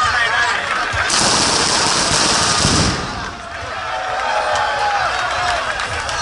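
A traca, a string of firecrackers, going off in a rapid crackling burst for about two seconds, starting about a second in, to signal the start of the race. Crowd chatter runs around it.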